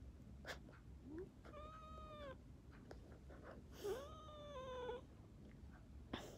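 A domestic cat meowing twice, each call drawn out for about a second, the second one sliding up at its start and dropping slightly at the end. A short rising chirp comes just before the first meow.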